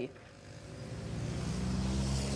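Road traffic on a city avenue: a motor vehicle's engine hum that grows steadily louder from about half a second in as it approaches.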